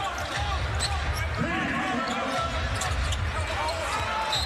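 A basketball being dribbled on a hardwood court, with short sneaker squeaks over the steady murmur of an arena crowd. A voice is heard briefly in the middle.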